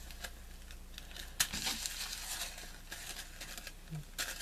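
Small clear plastic zip bags of diamond-painting drills crinkling and rustling as they are handled and shifted on a table, with a few sharp clicks, the clearest about a second and a half in.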